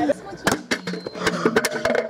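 A rapid series of sharp clacks and knocks, like a kick scooter's deck and wheels hitting the concrete of a skate bowl, mixed with short bursts of children's voices.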